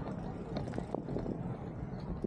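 Outdoor ambience on a busy beachfront bike path: a steady low rumble with scattered small clicks and knocks.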